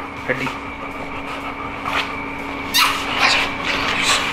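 A dog gives a brief whimper near the start, then a louder scuffling, rustling noise comes about three seconds in, over a steady low hum.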